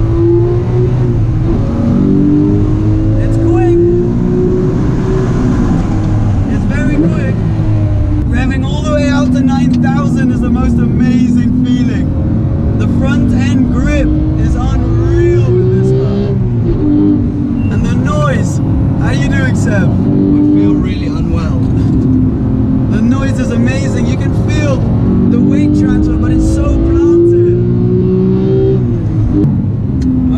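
Porsche 911 GT3's naturally aspirated flat-six heard from inside the cabin at track speed. It revs up through the gears again and again, rising in pitch, then falls away at each manual shift or lift for a corner.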